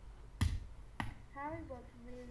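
Two sharp computer mouse clicks about half a second apart, then a faint voice.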